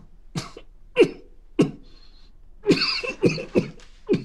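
A man coughing in a fit: three single coughs about half a second apart, then a quicker run of coughs near the end. The cough is from a cold.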